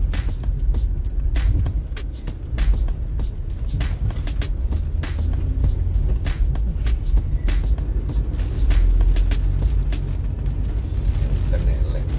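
Inside a car driving in rain: a steady low rumble of engine and road, with many irregular sharp taps of raindrops striking the windscreen. Music plays alongside.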